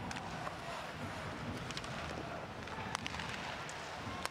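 Ice hockey arena sound during live play: a steady wash of arena noise with skates on the ice, broken by a few sharp clicks of sticks and puck.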